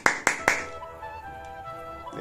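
Hand claps: three quick, sharp claps in the first half second, then faint music.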